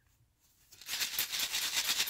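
Sequins and shaker bits rattling inside a shaker card's clear window as the card is shaken, starting about a second in after a near-silent start.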